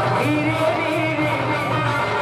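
A Sambalpuri song performed live by a stage orchestra: a man singing the melody into a microphone over instrumental backing, with a steady beat of about four ticks a second.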